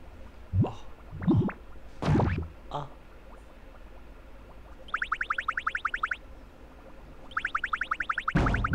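Cartoonish comedy sound effects: a few quick rising boings in the first three seconds, then a rapid run of short rising chirps, about a dozen a second, lasting about a second and starting again near the end.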